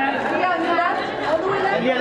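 Overlapping chatter of several voices, photographers calling out for poses over one another in a large hall.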